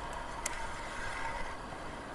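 Road bike riding along a paved road: faint steady hiss of tyres and moving air, with one sharp click about half a second in.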